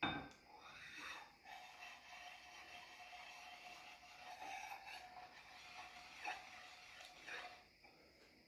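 Near silence: faint room tone with a faint steady hum that comes in about a second and a half in and stops near the end.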